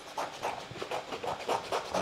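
Scissors cutting through thin card: a run of repeated short snips and rustles of the sheet.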